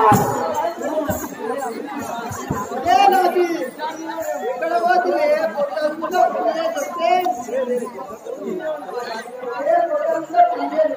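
Several people talking at once, loud overlapping voices of chatter, with a few dull knocks in the first few seconds.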